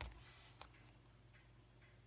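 Near silence broken by a light click at the very start and a smaller one about half a second in, with a few fainter ticks: hands and a small tool tapping and handling cardstock pieces on the craft mat.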